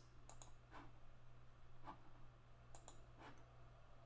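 Several faint computer mouse clicks, scattered over a few seconds, over a low steady hum.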